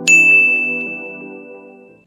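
Intro jingle: a bright chime ding strikes just after the start and rings on as a single high tone, over sustained synthesizer pad chords, the whole fading away by the end.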